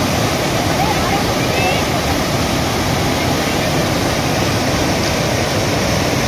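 Fast mountain river rushing over boulders in whitewater rapids: a steady, loud rush of water.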